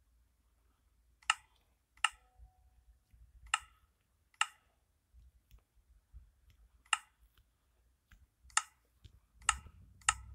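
A series of sharp clicks, about seven of them, at irregular intervals a second or two apart.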